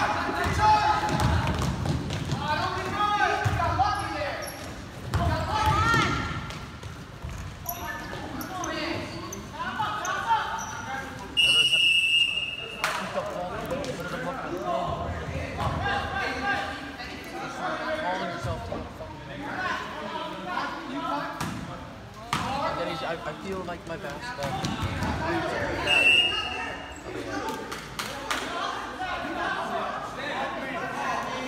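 Basketballs bouncing on a gym floor and players' shoes on the court during a basketball game, with players and spectators shouting, echoing in the gym. A referee's whistle sounds about eleven seconds in and again briefly near the end.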